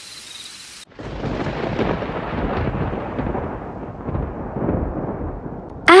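Thunder sound effect: a crack about a second in that rolls into a long rumble, its brightness dying away over about five seconds.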